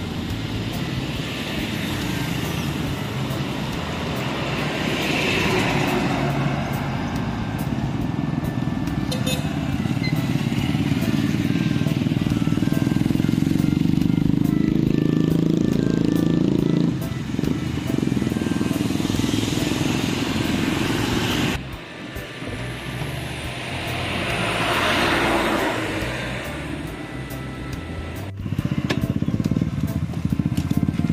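Road traffic going past: motorcycles and a small van drive by close, their engines and tyres swelling and fading in turn. The loudest, longest pass has a deep engine sound that builds over several seconds past the middle.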